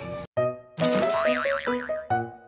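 Segment-transition jingle: the background music cuts off abruptly, then a short bright musical sting starts about half a second in, with a cartoon sound effect whose pitch wobbles rapidly up and down several times.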